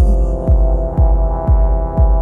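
Electronic synthpop track in a passage without vocals: a deep kick drum hits about twice a second under sustained synth chords.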